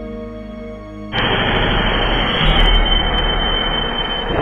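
Angle grinder cutting into brick, starting suddenly about a second in: a loud continuous grinding noise with a steady high whine. Background music plays underneath.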